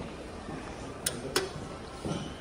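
Elevator hall call button pressed: two sharp clicks about a third of a second apart, over steady room noise. The button lights up as the call registers.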